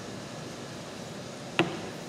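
Steady low room hiss with a single sharp click about one and a half seconds in, from a metal portion scoop knocking against a stainless steel pot while scooping chocolate bar mix.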